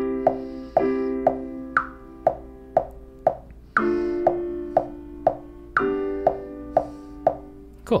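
A software piano plays a chord progression, four sustained chords changing at bar lines, over a metronome clicking twice a second with every fourth click accented.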